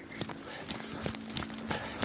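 Running footsteps on a concrete floor: quick, regular footfalls, about four a second.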